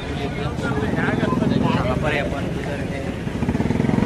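A motorcycle engine running close by, getting louder about a second in, with crowd voices and shouts over it.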